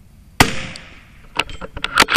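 .22 LR rifle fired once about half a second in, the shot ringing briefly. From about a second and a half in, a quick string of sharp clicks follows.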